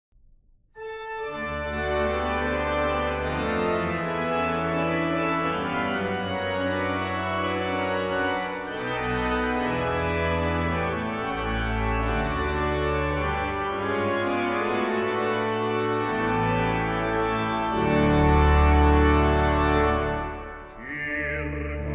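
Church pipe organ playing the introduction to a Finnish Lutheran hymn: held chords over a moving bass line, starting about a second in and swelling louder near the end.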